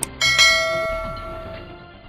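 Two quick clicks, then a single bell chime struck about a quarter second in that rings and fades over a second and a half. This is the notification-bell sound effect of a subscribe animation.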